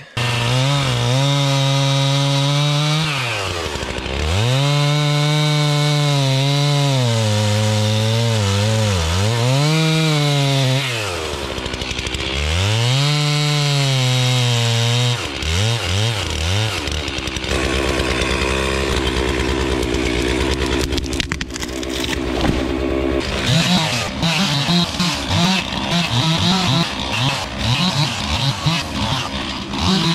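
Gas chainsaw cutting trees, the engine held at high revs through long cuts and dropping briefly in pitch between them. In the last several seconds it runs unevenly, with quick bursts of throttle.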